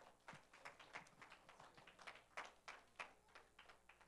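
Near silence, broken by faint, irregular taps and knocks a few times a second.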